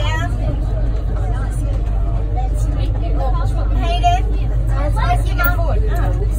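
Electric metro train running at speed on an elevated track, heard from inside the front of the car as a steady low rumble, with voices talking over it.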